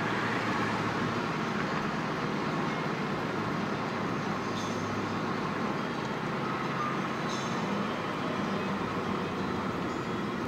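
Steady road noise of a car driving, heard from inside the cabin: an even rush of tyre and engine noise with a low hum underneath.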